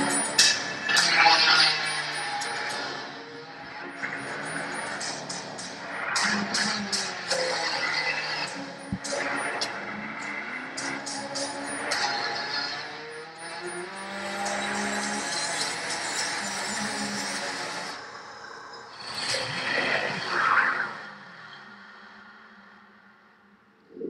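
Soundtrack of a Corvette promotional film: music mixed with car sounds, fading out over the last few seconds.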